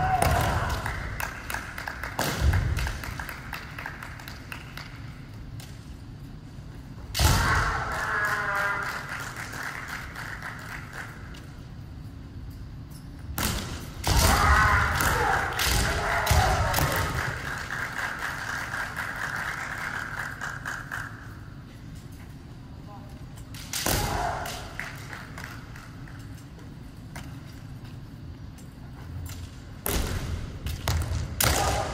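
Kendo fencers' long, held kiai shouts, the first about seven seconds in and a longer one from about 14 seconds, mixed with several sharp knocks of bamboo shinai strikes and stamping feet on the wooden floor.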